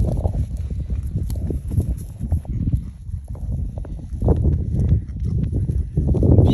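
Footsteps crunching over dry grass and rooted-up soil in an irregular walking rhythm, with a low rumble of wind on the microphone.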